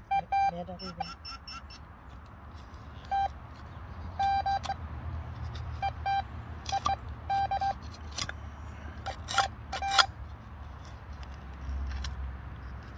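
Metal detector giving short, repeated beeps in small groups as its coil is passed over a dug hole: the buried target is still in the ground. A trowel scrapes and clicks in stony soil between the beeps, loudest between about seven and ten seconds in.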